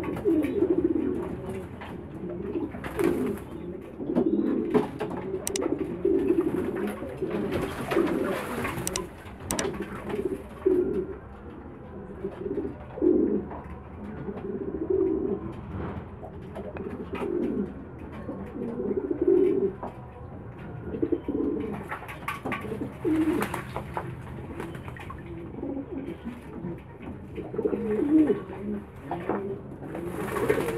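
Domestic pigeons cooing over and over, low and continuous. A few short bursts of wing-flapping and splashing come from birds bathing in a water basin, the biggest about three, eight and twenty-three seconds in.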